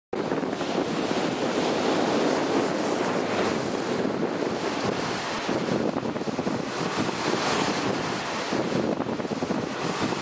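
Strong wind gusting on the microphone, with surf breaking on the shore beneath it.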